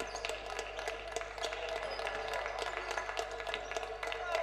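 Indoor basketball game sound: scattered sharp taps of the ball bouncing and shoes on the hardwood court over a low, steady murmur from the crowd in the hall.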